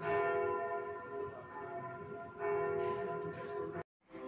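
Church bells ringing, fresh strikes at the start and about two and a half seconds in, each note ringing on, cut off abruptly just before the end.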